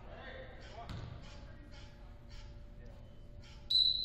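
A basketball bounced on a hardwood gym floor in an even rhythm, about three bounces a second, with faint voices in the hall. Near the end a short, loud, high-pitched ringing tone cuts in and dies away.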